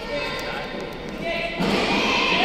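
A gymnast's vault run-up: footfalls thudding on the runway, then the springboard and vault-table strike near the end. Voices echo in a large hall throughout and get louder near the end.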